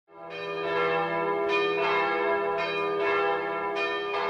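Bells ringing in a peal, strike after strike overlapping over a steady low tone, fading in at the start.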